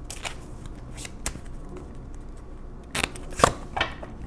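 A deck of tarot cards being shuffled and handled by hand: scattered crisp flicks and snaps of card stock, with a closer run of snaps about three seconds in.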